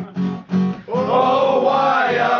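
Acoustic guitar strummed, a few short chords in a break between sung lines. About a second in, a group of men's voices comes back in singing.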